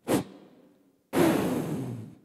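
Two whooshes: a short, sharp one at the start that fades quickly, then a louder, longer rushing whoosh about a second in that fades out.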